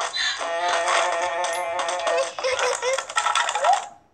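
A short burst of bright, synthesized music from a children's story app, made of several held, slightly wavering tones with a brief rising glide near the end. It cuts off just before the end.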